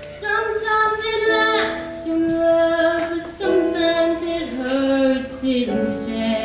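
A young woman singing with long held notes, accompanying herself on an electric keyboard.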